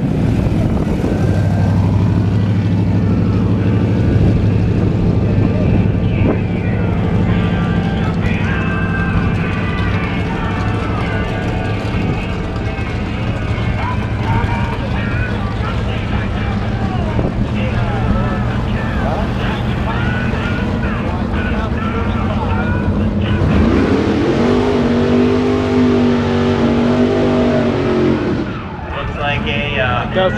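Classic Mopar drag cars idling in the staging lanes: a steady low engine rumble, with voices in the background. Near the end a louder pitched sound wavers up and down for several seconds.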